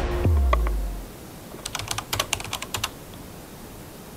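A music track ends on a deep boom that fades out within the first second. Then, over a steady hiss, comes a quick, uneven run of about a dozen sharp clicks lasting just over a second.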